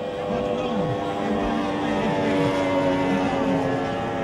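Racing powerboat's outboard engine running flat out as the boat passes close by, a steady engine whine that swells through the middle of the pass.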